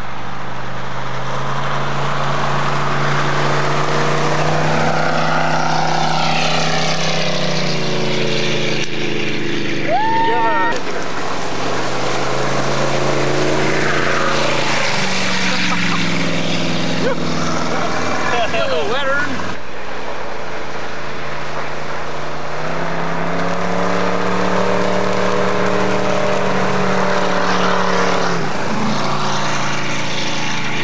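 Small motorboat's engine running hard at speed, its pitch slowly rising and falling as the boat passes and turns. Brief high calls break in about a third of the way through and again past the middle.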